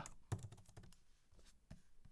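Faint keystrokes on a computer keyboard, a few scattered key presses as a short word is typed.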